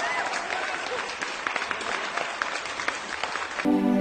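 Audience applauding with many hands clapping. Near the end it cuts abruptly to a band's keyboard music starting.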